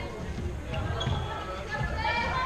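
Floorball play on an indoor court: irregular dull thuds of feet and play on the hall floor, with voices calling faintly in the background.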